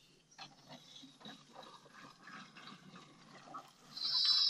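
Near silence: a faint outdoor background with scattered small, indistinct sounds.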